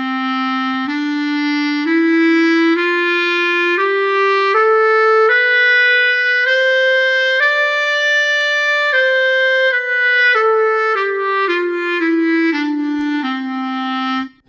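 SWAM Clarinet virtual instrument played from an Akai clarinet-style breath controller, sounding like a clarinet: a C major scale played legato, rising note by note and then stepping back down to the starting note.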